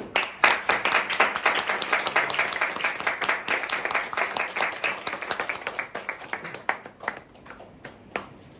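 Audience applauding at the end of a song: dense clapping that thins out after about six seconds to a few scattered claps.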